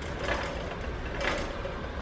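A shopping cart being pushed along, its wheels and wire basket rattling softly over steady low background noise.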